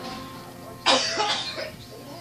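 An electronic keyboard chord fading away, then a sudden short burst of a person's voice about a second in, cough-like and noisy.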